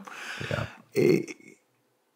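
A man's short breathy chuckle, then a brief spoken 'yeah'.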